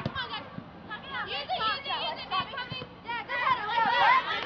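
Children's high voices shouting and calling out over one another during a youth soccer game.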